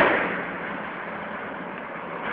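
The echo of a heavy blast from tank fire, dying away over about half a second, then steady background noise.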